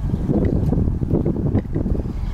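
Wind buffeting the microphone: a loud, fluttering low rumble.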